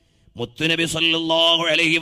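A man chanting Arabic devotional verse in a melodic recitation style, with long held notes. It starts about half a second in, after a brief pause.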